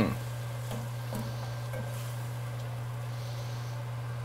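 A plastic spoon stirring meat in coconut milk in a steel stockpot, giving a few faint soft taps over a steady low hum.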